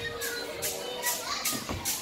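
Background sound of an indoor children's play area: faint children's voices and faint music, with a faint steady tone for the first half second.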